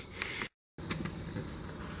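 Low, steady room noise from a handheld camera's microphone, broken about half a second in by a brief dropout to dead silence at an edit cut.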